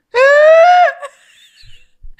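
A woman's high-pitched shriek of laughter: one long squeal lasting under a second, rising slightly in pitch, then trailing off into faint wheezy laughter.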